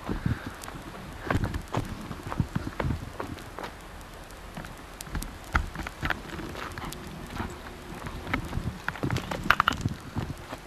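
Irregular knocks, taps and clicks from a jostled handheld VHS camcorder, over a low outdoor background.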